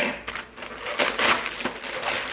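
Gift wrapping paper being torn open by hand and crinkling, in a few irregular rips, the loudest about a second in.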